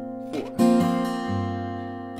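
Acoustic guitar in open D A D F♯ B E tuning, capoed, strummed: a light stroke and then a full chord strum about half a second in, left ringing out.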